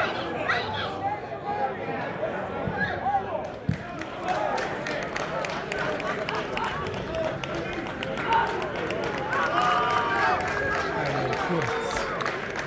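Several people's voices talking and calling over one another at a football ground. A quick run of faint sharp clicks sets in about three and a half seconds in.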